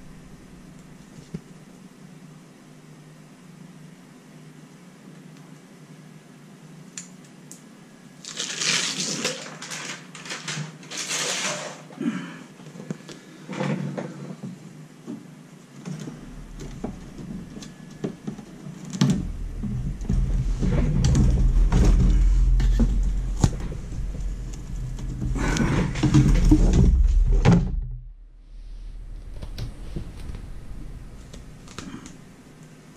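Sheet of reflective insulation crinkling and rustling as it is handled and pushed into a toaster oven's metal body, in bursts after a quiet start, with scattered knocks. Later comes a heavy low rumble and more rustling, the loudest part, as the oven is handled on the desk; it stops shortly before the end.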